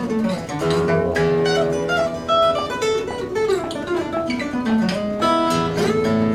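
Solo steel-string acoustic guitar played fingerstyle: a plucked melody over moving bass notes, with a few sharp strummed chords, one about a second in and another near the end.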